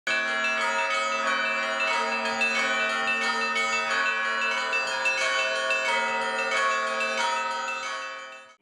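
Orthodox church bells ringing a busy peal, many bells struck in quick succession over a low sustained hum, fading near the end.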